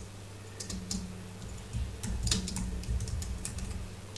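Typing on a computer keyboard: a run of irregular keystrokes starting about half a second in, over a low steady hum.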